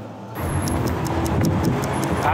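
Road traffic: vehicles driving past with a steady rumble that starts abruptly a moment in.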